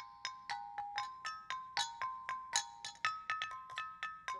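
A xylophone-type instrument struck with mallets, playing a quick melody of ringing notes at about four strikes a second.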